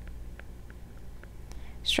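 Faint, light ticks of a stylus tapping and stroking a tablet screen during handwriting, a few per second and irregular, over a low steady hum. Speech starts right at the end.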